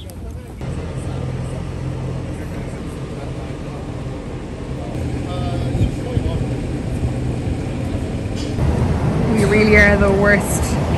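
City street traffic noise with a steady low rumble of vehicles, stepping up in level about half a second in. People's voices come in near the end.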